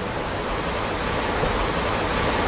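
Steady rushing of a waterfall: an even, unbroken wash of falling-water noise.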